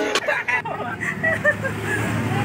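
Background music cuts off about half a second in, giving way to faint voices talking over a steady low hum.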